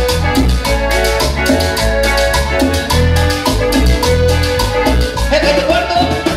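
Live cumbia band playing a dance beat: accordion melody over electric bass, electric guitar, congas and drum kit.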